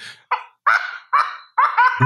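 A person laughing in four short, high-pitched bursts with brief gaps between them.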